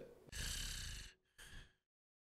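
A person's faint, breathy sigh lasting under a second, followed by a short second breath about a second and a half in.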